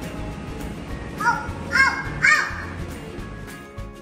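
Arcade game music playing, with three short squawk-like calls that rise and fall in pitch between about one and two and a half seconds in. Near the end it changes to different music with steady held notes.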